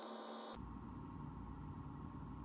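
Steady low hum and hiss of workshop room tone, with no distinct tool or wire sounds. The background changes abruptly about half a second in, becoming a heavier low rumble.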